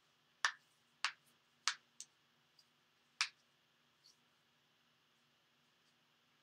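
A series of sharp, short clicks: five in the first three and a half seconds, irregularly spaced, then a couple of fainter ones, over a faint steady hum.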